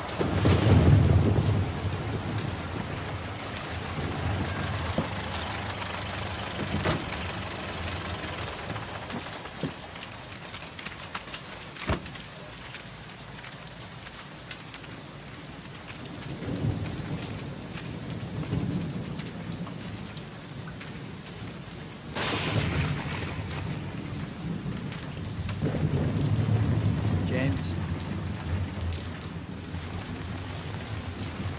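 Steady rain with several low rolls of thunder, the strongest near the start and others around the middle and later on, and a sharper thunder crack a little past two-thirds of the way through.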